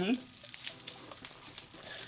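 Low rustling and crinkling of mail packaging and a cloth tote bag being handled, with a few faint ticks.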